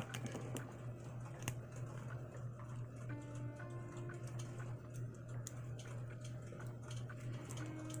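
Small scattered clicks and ticks of an action figure's plastic joints, turned at the bicep swivel while a hand is fitted to the arm, over a steady low hum.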